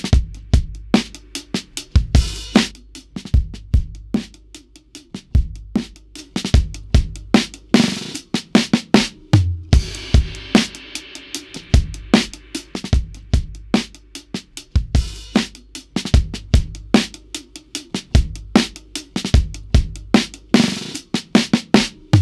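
A vintage-flavoured drum loop, kick and snare in a steady groove, played through the SSL LMC+ Listen Mic Compressor plugin: hard, fast-acting compression that brings out the room and the punch of the hits.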